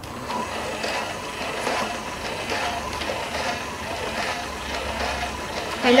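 Clementoni WalkingBot toy robot running: its small battery-powered dual-shaft motor drives the plastic gear train and legs with a steady whirring, rattling gear noise.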